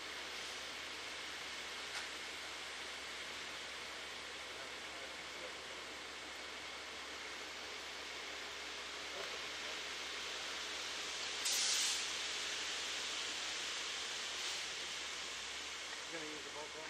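Steady low hiss of background noise. About three quarters of the way through comes one brief, louder rush of hiss.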